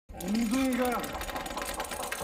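A man speaks briefly, over metal screeching: a rapid, grating rattle with steady ringing tones that carries on after the voice stops, about a second in.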